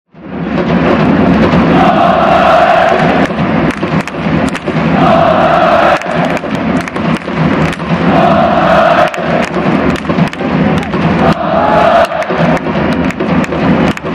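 A large crowd of football supporters chanting in unison over drum beats. The chant phrase repeats about every three seconds, each time with a long held note, and the words appear to be the club's name, "Consadole".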